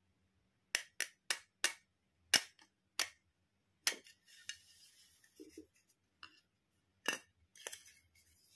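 Hard plastic toy teeth tapped and clicked against each other, with a run of about seven sharp clicks over the first four seconds. A soft rustle of handling follows, then a few more plastic clicks near the end.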